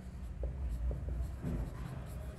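Marker pen writing on a whiteboard: faint scratching strokes with a few small ticks, over a low steady hum.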